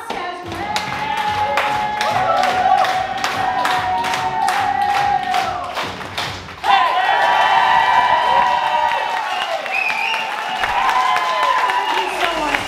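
Live pop song: a woman singing in Portuguese into a microphone over backing music, with a steady percussive beat of about three strikes a second for the first half. From about halfway the singing turns louder, with long held notes.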